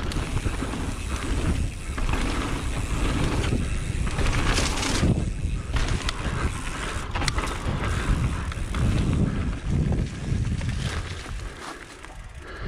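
Mountain bike riding fast down a dirt trail: wind buffeting the camera microphone over the rumble of tyres on dirt, with occasional sharp knocks from the bike over bumps, easing off near the end.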